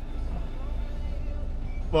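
Car engine idling at a standstill in traffic, heard from inside the cabin as a steady low rumble.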